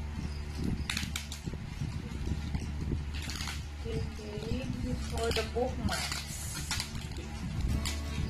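Plastic bubble wrap crinkling in several short bursts as it is pulled and peeled by hand off a hardback book.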